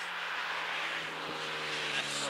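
A motor vehicle passing on the road: tyre and engine noise, with a steady engine hum that drops slightly in pitch as it goes by.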